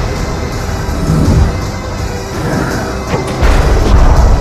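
Loud film-trailer music laid with crashing impact hits. A heavy low hit begins about three and a half seconds in.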